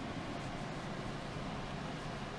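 Steady background hum and hiss of a room, even throughout with no distinct knocks or clicks.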